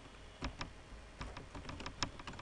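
Typing on a computer keyboard: a handful of separate, irregularly spaced keystroke clicks.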